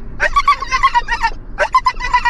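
A dog giving a rapid string of short, high-pitched whining yelps, in two bursts.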